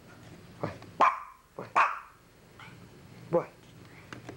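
Pomeranian giving a series of short, sharp barking calls, about five in all, the loudest about a second and two seconds in.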